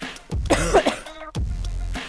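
A woman coughs once, a short loud burst about half a second in, a cough from the illness she is exercising through. Background electronic workout music with a low beat about once a second plays under it.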